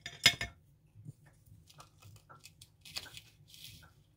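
Crafting handling noises: a sharp clack about a third of a second in, as a hot glue gun is set down in a ceramic tray, then light clicks and a brief rustle as plastic artificial leaves are worked into a small pot.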